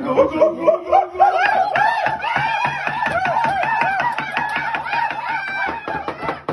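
People laughing hard, a rapid string of high-pitched laughs overlapping one another.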